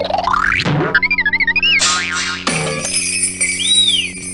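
Comic sound effects over a held music chord. A rising whistle-like glide comes first, then a warbling tone, a short boing-like burst, and bright chiming high tones that swoop up and down near the end.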